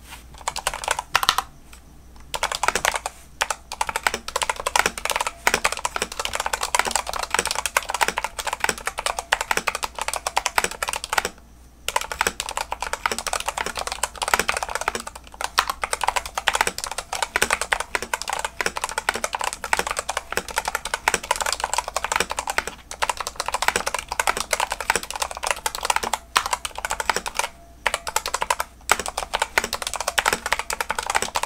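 Fast, continuous typing on a Dustsilver D66 mechanical keyboard with Gateron Brown tactile switches: a dense run of keystroke clacks, broken by short pauses about two seconds in, near the middle and near the end.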